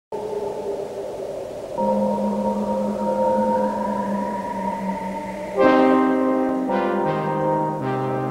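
Brass-led theme music opens on held chords under a slowly rising tone. About five and a half seconds in, a louder brass chord enters, and the chords change about once a second after that.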